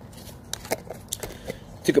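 A quiet pause broken by a few faint short clicks, then a man starts speaking near the end.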